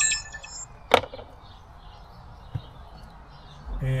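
VIOFO A119 Mini 2 dashcam giving a short, high electronic beep as its power is cut, followed by a single sharp click about a second in as the power cable is handled.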